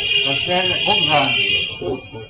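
A loud, steady, high-pitched electronic buzzing tone, alarm-like, sounding over a man's speech and fading out near the end.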